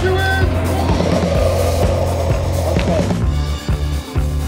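Background music with a steady bass line. Over it, a small autonomous robot car's wheels roll on asphalt as it drives past, a rushing rolling sound that stops about three seconds in.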